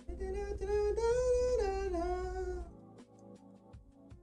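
A single voice sings one long, wavering note for about two and a half seconds. The pitch rises slightly and then falls away, over quiet background music.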